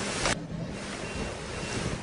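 Eraser wiping across a whiteboard: a short swish that stops abruptly about a third of a second in, followed by steady background hiss.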